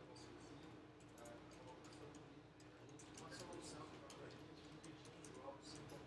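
Near silence: faint room tone with a steady low hum and scattered faint clicks, typical of a computer mouse being clicked.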